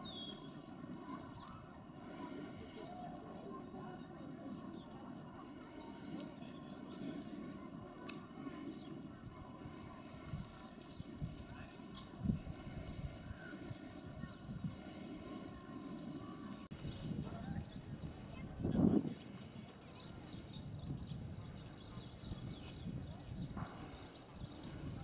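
Faint outdoor ambience: distant, unintelligible voices, a short run of high chirps about six seconds in, and one brief louder sound about three-quarters of the way through.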